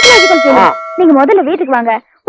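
A single sharp metallic clang at the very start, ringing on in several steady tones that fade away over about a second.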